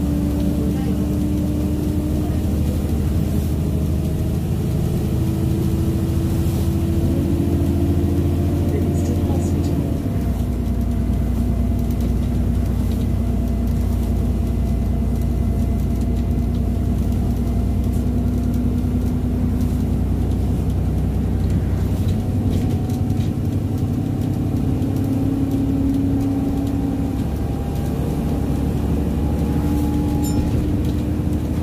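Alexander Dennis Enviro400 diesel double-decker bus heard from inside the passenger saloon, its engine and driveline running steadily under way. The whine rises slowly, drops in pitch suddenly about ten seconds in, then climbs again later.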